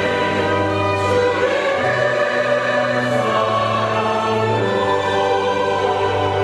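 Mixed church choir singing a Korean sacred anthem in held, sustained chords, accompanied by a chamber orchestra, with a change of chord about two seconds in.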